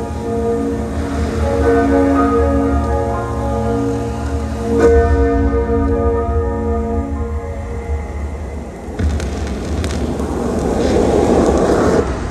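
Live concert music played loud in an arena: slow, sustained chords with bell-like tones over deep bass. A wash of crowd cheering swells near the end.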